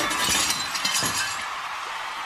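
Glass shattering: the tail of a smash, with shards tinkling and scattering and slowly fading.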